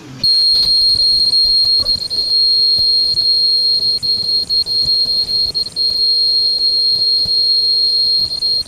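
Ultrasonic lace cutting machine running: a loud, steady high-pitched whine at one unchanging pitch starts about a quarter second in. Underneath are a low hum and irregular light clicks as the lace strip runs past the cutting wheel.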